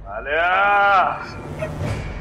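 A single drawn-out vocal call, about a second long, rising and then falling in pitch.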